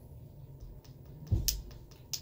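Handling sounds of a glass hot sauce bottle tipped over a metal spoon: faint small clicks, then a low thump and a sharp click about one and a half seconds in.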